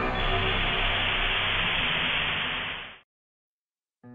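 Radio static hiss, steady, fading and cutting off about three seconds in.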